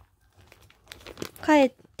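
Clear plastic bag crinkling faintly as a rabbit pushes its head into it to eat hay, a few short crackles about a second in.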